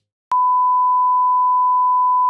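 Colour-bar test tone: a single loud, steady pure beep that starts about a third of a second in and holds at one pitch without wavering.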